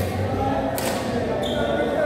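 Indoor badminton hall ambience: voices chattering in the large echoing room, a single sharp smack a little under a second in, and a short high squeak about half a second later.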